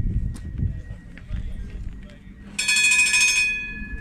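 The tram-train's warning bell rings once, suddenly and brightly, about two and a half seconds in, with a ringing tail that fades slowly. Before it there is a low rumble that dies away.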